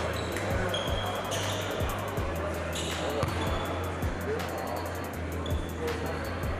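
Basketball bouncing on an indoor court, with a few short sneaker squeaks and players' voices over background music.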